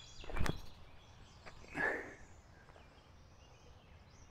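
Movement sounds of a forehand disc golf throw: a sharp thump about half a second in as the disc is released, then a softer short rustle a little before the middle, over quiet outdoor ambience.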